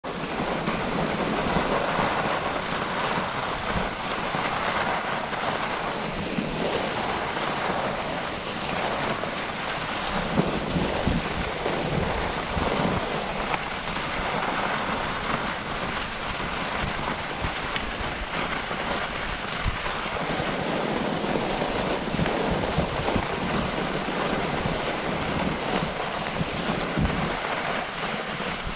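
Skis running fast over groomed snow with wind on the microphone: a steady rushing hiss.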